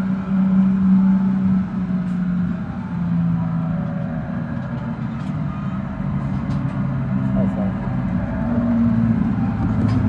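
Spider ride's machinery running as the ride winds down, a low hum that drops and then rises in pitch, with faint clicks and background voices.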